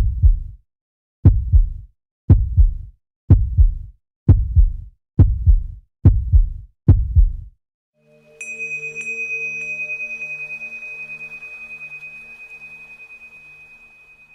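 Edited sound-effect track: deep heartbeat-like double booms, about one a second and quickening. A little past halfway they give way to a steady high tone over slowly pulsing low notes, which fades away.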